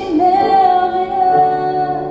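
A woman singing one long held note into a microphone, accompanied by chords on an upright piano; a lower piano note comes in about halfway through.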